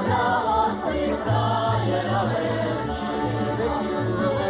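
A group of voices singing a Slovak folk song together, over a low bass line.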